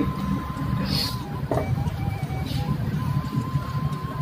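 Faint background music over a steady low hum, with a few light knocks and rustles about one to two and a half seconds in.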